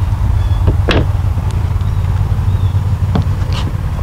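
Steady low rumble with a couple of light knocks, about a second in and about three seconds in.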